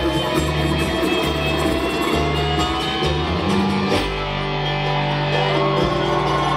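Live bluegrass band playing an instrumental passage: acoustic guitar, dobro played with a slide bar, banjo and upright bass.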